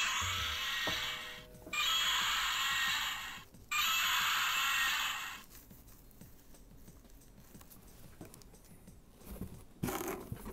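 A small stuffed T-Rex plush's built-in sound box playing a Godzilla roar three times back to back, each roar just under two seconds long, then falling quiet.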